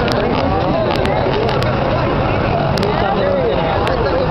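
Indistinct voices of people talking, over a steady low rumble, with a few sharp clicks.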